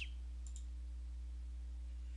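A steady low electrical hum in the background, with one faint computer-mouse click about half a second in.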